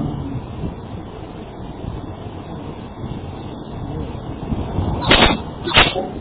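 Faint steady hiss and room noise on a low-quality recording, broken by two short, loud thumps about five and six seconds in.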